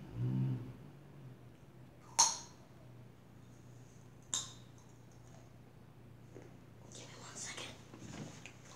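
A short murmur of voice at the start, then two sharp, crisp crunches about two seconds apart, the first the loudest: bites into raw carrot sticks. Rustling of movement near the end.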